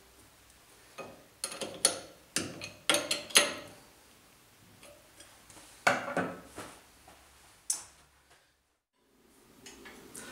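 Sharp metallic clicks and clinks from a Schaublin dividing head as its worm is engaged and a small tool is handled against it. There is a quick run of them in the first few seconds and a few more spaced out later.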